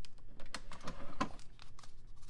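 Long acrylic nails and fingers clicking and tapping on the hard plastic top of a Keurig coffee maker as its buttons are pressed and the lid is lifted: a string of sharp, irregular plastic clicks.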